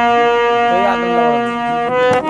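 Harmonium holding a steady sustained chord between sung lines of a folk bhajan, with no drumming.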